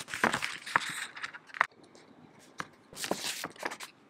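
Clear plastic sticker sheet and paper rustling and crackling as stickers are peeled off and pressed onto a journal page. There is a sharp click about a second and a half in, a short pause, and another brief rustle near three seconds.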